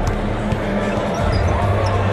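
Basketball arena during warm-ups: basketballs bouncing on the hardwood court over a steady crowd murmur and background music with a low, steady bass.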